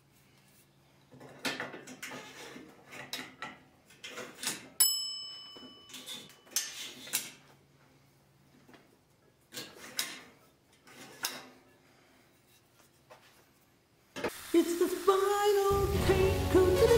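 Steel tubes of a roof-rack extension, sleeved in heat-shrink tubing, being slid in and out of their outer tubes: a series of clacks and knocks with short pauses, and a sharp hit that rings with a short bright ding about five seconds in. Music starts near the end.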